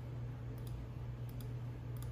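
Computer mouse clicking a few times, faint separate clicks as order check boxes are ticked, over a steady low hum.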